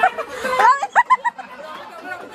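Overlapping chatter of a small group of people, with a high-pitched voice rising sharply and a few short bursts like laughter about a second in.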